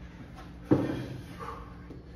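A single dull thud about two-thirds of a second in, fading over about half a second: a person dropping down onto a rubber gym floor into a burpee.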